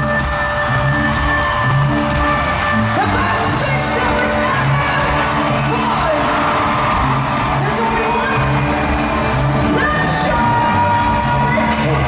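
Live pop music played through an arena sound system, heard from the stands: an instrumental stretch with a steady dance beat, regular drum hits and sustained synth tones.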